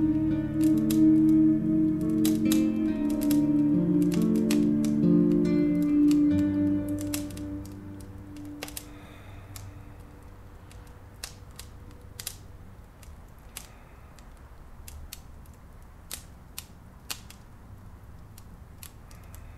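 Soft plucked-string background music fades out over the first seven or eight seconds. It leaves a low steady hum and a small open fire crackling with scattered sharp pops.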